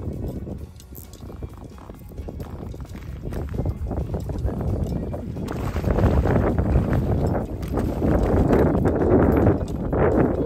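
Water splashing and churning as a hooked bass thrashes at the surface beside a float tube. It grows louder and more constant through the second half.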